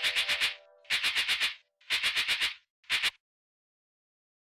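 Music ending on rattling percussion: groups of about five quick rattling shakes, roughly one group a second, over a held chord that fades out in the first half-second. The last, shorter group comes about three seconds in, and then the music stops.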